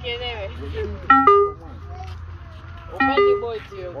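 A car horn sounds two short toots about two seconds apart, each stepping down to a lower note, over a low steady hum and people talking.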